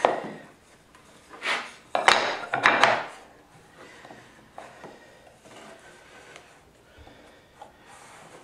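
Pieces of wooden base shoe moulding being handled and fitted together at a coped inside corner: a few short knocks and wood-on-wood scrapes in the first three seconds, the loudest starting with a sharp click about two seconds in, then only faint small taps.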